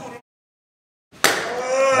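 A man's voice cut off abruptly into about a second of dead digital silence, an edit cut, after which voices resume.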